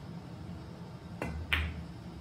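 Pool shot: a light click of the cue tip striking the cue ball a little over a second in, then a louder, sharper clack a moment later as the cue ball hits an object ball.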